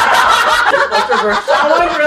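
People laughing, with bursts of chuckling mixed into overlapping talk.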